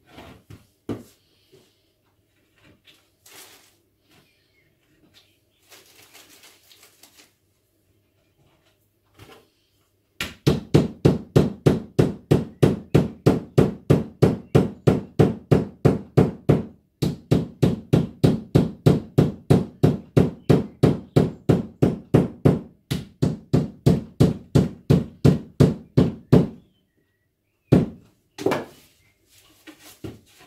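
Small hammer tapping a thin wooden board into place against a wooden bookcase side: a long, steady run of quick, dull knocks, about three or four a second, with a brief pause partway, then two more knocks near the end. Quieter handling of the wood comes before the tapping.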